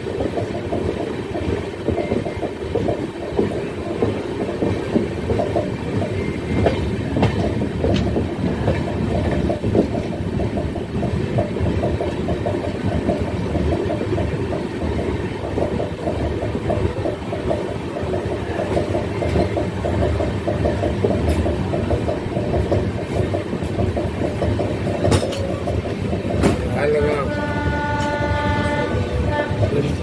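A moving Indian passenger train, heard from beside an open coach door: its wheels clatter and rumble steadily over the rails and points. About 27 seconds in, a train horn sounds one steady tone for about three seconds.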